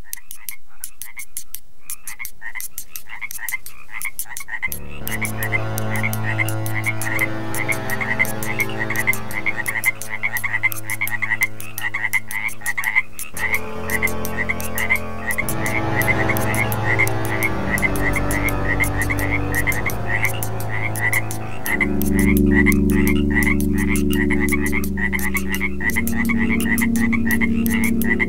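A chorus of frogs croaking in rapid, dense repeated calls. Slow, held electronic drone chords come in underneath about five seconds in and change twice.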